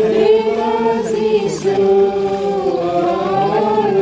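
A group of voices singing a slow hymn without instruments, holding long notes that glide gently from one to the next.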